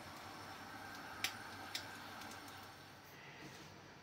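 Faint sizzle of egg-battered patties frying in oil in a non-stick pan, fading near the end, with two short sharp clicks half a second apart just over a second in.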